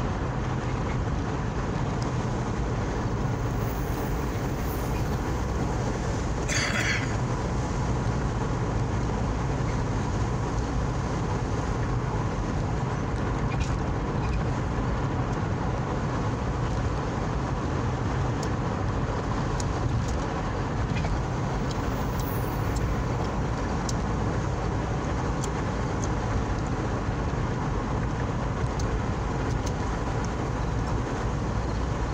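Steady road noise of a moving car, a constant low rumble of tyres and engine, with a brief hiss about seven seconds in.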